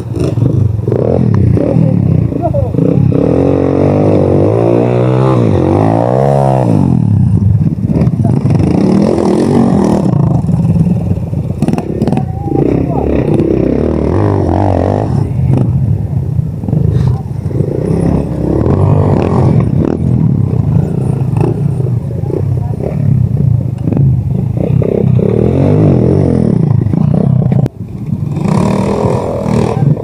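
Several small dirt-bike engines running in low gear, their pitches rising and falling against one another as the bikes work down a steep slope. Several engines overlap, most plainly a few seconds in.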